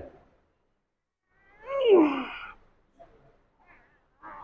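A man's groan of effort, one pitched vocal sound falling in pitch, about a second and a half in, as he works a pair of dumbbells through a curl rep.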